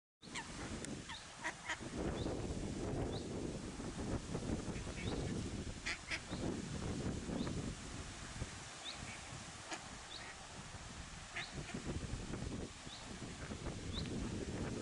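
Mallard ducklings peeping in short, high, rising chirps scattered throughout, with a mallard hen giving occasional quacks.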